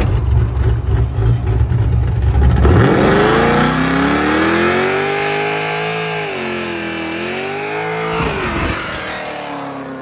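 Pontiac G8 doing a burnout: a deep, rumbling exhaust at first, then the engine revs up about three seconds in and is held high while the rear tyres spin, with a high hiss over it. The revs dip and recover once, drop sharply near the eight-second mark, and the sound fades toward the end.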